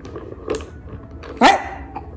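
A toddler's single short, high-pitched shout about one and a half seconds in, over a quiet background with a faint knock about half a second in.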